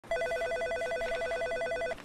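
Electronic telephone ringer warbling: a steady, rapid trill between two tones, cutting off abruptly at the end.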